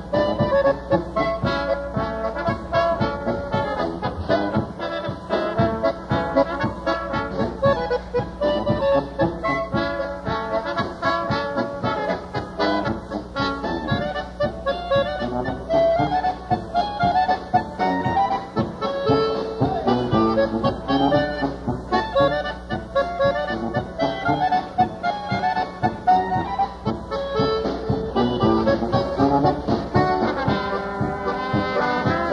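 Live polka band playing a polka, a concertina carrying the melody over a steady oom-pah beat, in a dull-topped old radio recording.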